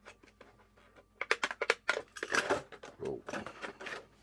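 Rapid clicks and crackles of stiff plastic packaging being handled, starting about a second in, with a brief "oh" near the end.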